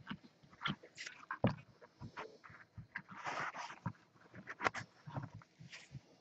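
Hands handling packaging: irregular taps, clicks and short rustles, with a sharp knock about one and a half seconds in, a longer rustle about three seconds in and a quick run of clicks near the end.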